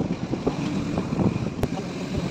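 Wind rushing over the microphone with the low rumble of a moving passenger vehicle on the road. One sharp click comes near the end.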